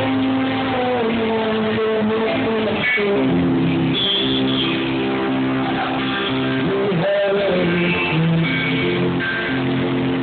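Live blues-rock band playing: electric guitar and bass guitar with a male singer's vocals.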